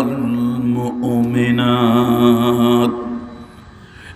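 A man chanting a Quran verse in the melodic tilawat style, holding long drawn-out notes with a short break for breath about a second in. The chant ends about three seconds in and fades out.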